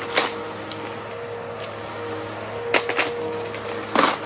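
Upright vacuum cleaner running steadily over a rug, with sharp rattling clicks as coins and debris are sucked up: one just after the start and a few in quick succession near the end.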